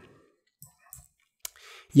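A few faint computer mouse clicks, the sharpest about a second and a half in, followed by a short breath.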